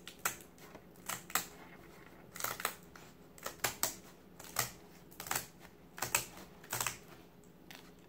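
Scissors cutting through a tough slatted mat: crisp snips, roughly two a second, often in close pairs, as each slat is cut.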